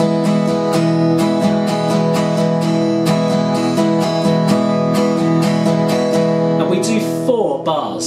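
Yamaha steel-string acoustic guitar strummed on an open E major chord in a steady down, down-up strumming rhythm, several strokes a second. The strumming stops about seven seconds in.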